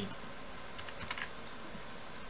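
A few faint computer keyboard clicks, about a second in, over a low steady hiss.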